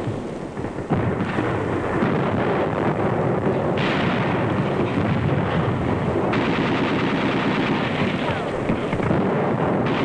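Dense, continuous battle gunfire on an old war-film soundtrack, mostly rapid machine-gun fire with other shots mixed in. It dips briefly in the first second, then runs loud and unbroken.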